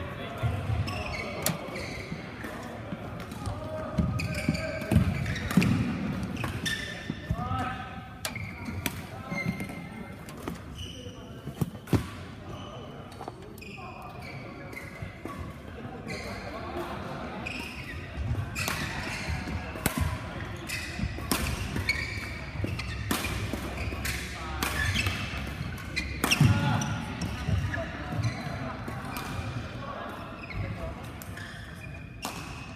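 Badminton hall ambience: scattered sharp racket-on-shuttlecock hits from play on the courts, with people talking.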